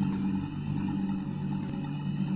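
A steady low drone of several held tones, with a few faint ticks.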